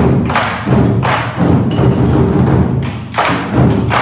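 Ensemble of Chinese barrel drums struck together with wooden sticks: loud booming hits, each leaving a low ringing tone. A quick run of strikes, a lull of about a second and a half, then strikes again near the end.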